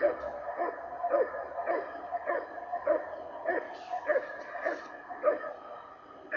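A dog barking over and over at an even pace, about two barks a second.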